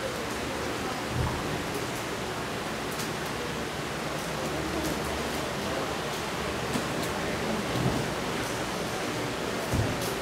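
Steady hiss of room noise, with a few faint, scattered taps and scrapes of chalk on a blackboard as a diagram is drawn.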